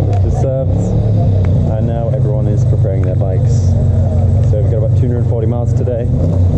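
Motorcycle engines idling with a steady low hum while people talk over them.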